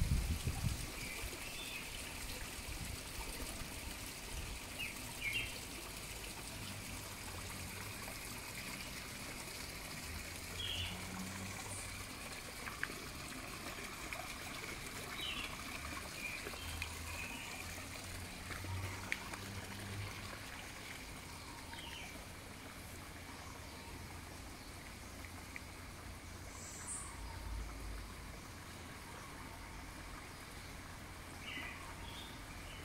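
Water trickling steadily, with a few short bird chirps now and then.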